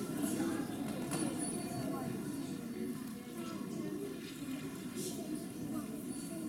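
Audience murmur in a hall: many indistinct voices talking quietly at once, with a couple of light knocks about a second in and near five seconds.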